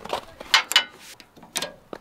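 About four sharp metallic clicks and clanks as a tie-down hook is fitted onto the steel side rail of a car trailer.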